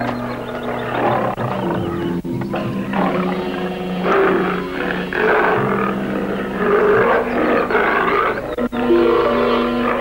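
A tiger roaring and snarling, over background music.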